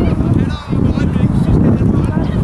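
Wind buffeting the camera microphone in a loud, uneven rumble, with faint short shouts from far off.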